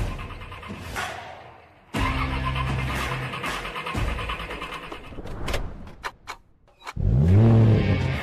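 Car engine start: several sharp clicks from the ignition, a brief hush, then the engine catches with a quick rev that rises and falls back, loud near the end. Music plays underneath.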